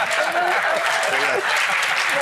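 Studio audience and panel applauding, a steady patter of many hands clapping, with voices talking over it.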